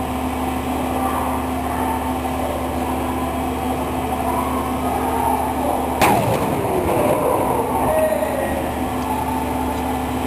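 A single sharp blast about six seconds in, from the controlled detonation of a found unexploded shell, trailing off over the following second or so. A steady low hum runs beneath it.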